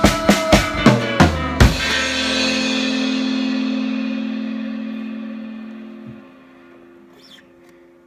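The end of a rock song on drum kit and amplified tenor ukulele: fast drum hits close on a final accent about a second and a half in. The last chord and the cymbals then ring out and fade over about four seconds, with a soft thump as the ringing is stopped about six seconds in.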